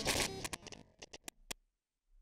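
Glitch sound effects of an intro logo animation: a dense burst of static-like noise fading out in the first half second, then a run of short sharp digital clicks that stop about a second and a half in.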